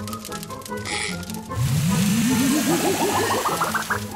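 Cartoon background music, with a short hiss about a second in. From about halfway through, a warbling sound effect rises steadily in pitch for over two seconds.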